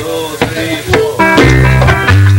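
Salsa orchestra of trombones, saxophones, piano, electric bass and Latin percussion starting a tune right after a count-in. Strong held low notes come in about one and a half seconds in.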